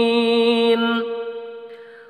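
Quran recitation: a single voice holds the drawn-out end of a verse on one steady pitch, then fades out over the second half.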